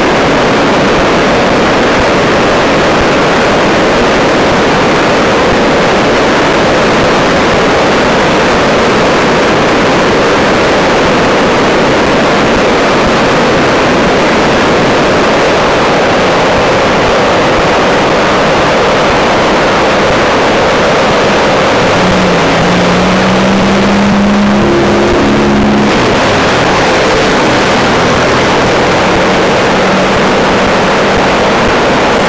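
Loud, steady rushing of fast-flowing floodwater, an even noise without a break. About two-thirds of the way in, a low droning tone joins it for a few seconds, then fades.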